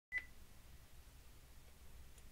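A single short, high beep just after the start, then near silence: room tone with a faint low hum.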